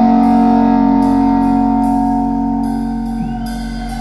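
Live rock band holding a sustained electric guitar chord that rings on and slowly dies down a little near the end, heard through arena amplification.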